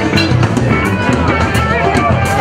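Live rock band playing through a PA: drum kit keeping a steady beat under electric guitar and bass.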